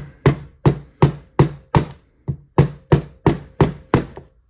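About a dozen sharp knocks, roughly three a second with a short pause near the middle, from a small-engine carburetor body being tapped by hand. It is the final seating of a newly fitted fuel-inlet needle seat.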